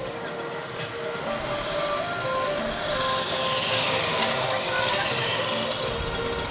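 Street traffic: a motor vehicle passes, its noise swelling to its loudest about four seconds in, over steady held tones.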